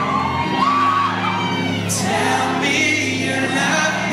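A man singing a slow, held melody into a microphone over a band's backing music at a live concert.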